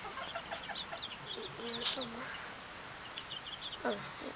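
Chickens clucking, with a few low, gliding calls in the middle, over runs of rapid high chirping that come and go several times.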